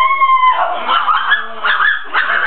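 A high-pitched, drawn-out howling cry that wavers and slides upward, breaking off about half a second in, followed by a jumble of shorter cries and voices.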